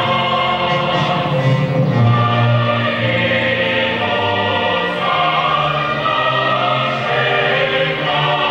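Choral music: a choir singing slow, long held notes.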